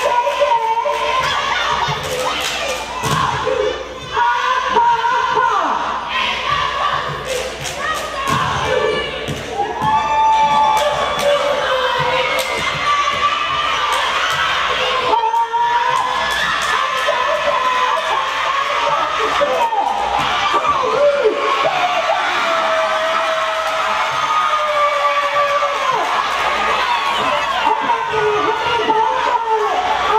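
Cheerleading squad shouting a chant together, with sharp claps and stomps that come thickest in the first half, over crowd noise.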